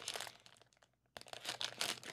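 A foil blind-bag packet being torn open and crinkled by hand: a spell of crackling, a pause of about half a second, then more crinkling.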